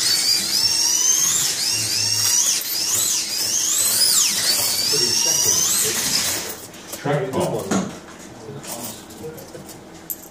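Several slot cars' small electric motors whining at high pitch, the pitch rising and falling over and over as the cars speed up and brake around the track. The whine dies away about six and a half seconds in.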